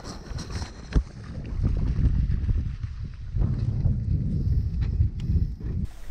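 Wind buffeting the microphone: a low rumble that rises and falls in gusts, with one sharp knock about a second in.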